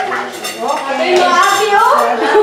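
Cutlery and serving spoons clinking against plates and metal buffet trays as people serve themselves, with several voices talking over it.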